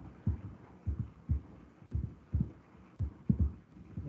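A run of low, muffled thumps, about two a second and unevenly spaced, over a faint hum.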